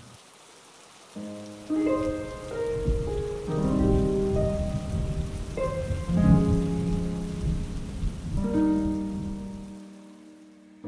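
Rain falling steadily, with soft background music of slow, held notes over it; both come in about a second in and fade out near the end.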